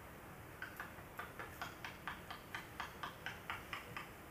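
A rapid, even series of light clicks, about four a second, starting just after half a second in.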